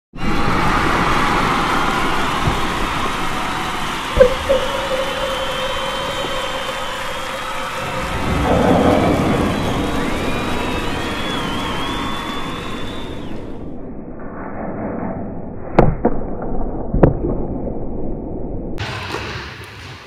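A loud rushing, rumbling noise for about thirteen seconds, with a click and a steady tone in the middle, then cuts to a muffled stretch with two sharp thuds about a second apart.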